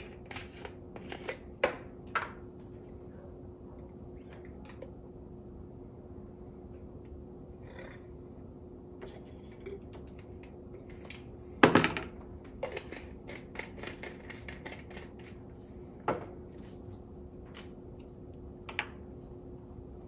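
Sparse light clicks and knocks from a reagent bottle, a pipette and glassware being handled on a stainless steel bench while starch indicator is added to a wine sample. The loudest knock comes about twelve seconds in, over a faint steady hum.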